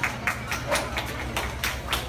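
Scattered hand claps from a few listeners after a live acoustic guitar song: separate sharp claps at an uneven pace, some louder than others, rather than a dense round of applause.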